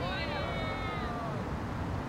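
A drawn-out vocal call, falling in pitch and fading out over about a second and a half, then steady outdoor background noise.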